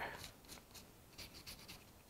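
Faint rubbing and a few light scratches of latex-gloved fingertips working wax creme over the textured surface of a paperclay piece.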